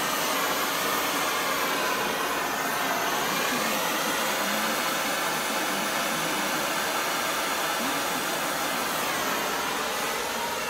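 MAP gas hand torch burning with a steady hiss, its flame heating an aluminum intercooler tube for low-temperature aluminum brazing.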